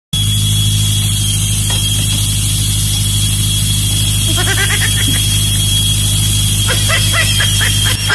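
Pneumatic jackhammer breaking concrete, running loud and unbroken with a thin steady high tone through it.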